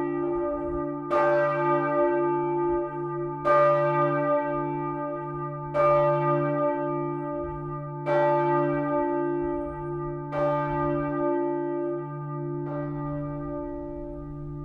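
A church bell tolling: single strokes about every two and a half seconds, six in all, each ringing on and fading over a steady low hum that carries from one stroke to the next.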